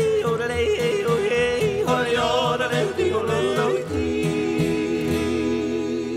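A man yodeling in a cowboy song to a guitar. The voice flips quickly between low and high notes, then from about four seconds in holds one long, wavering note.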